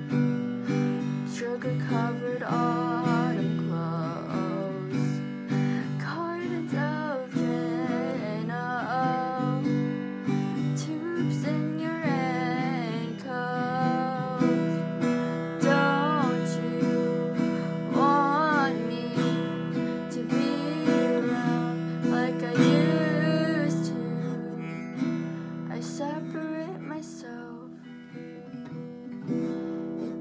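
Acoustic guitar strummed in steady chords under a solo voice singing a slow melody with long, wavering held notes. The playing gets softer for a few seconds near the end.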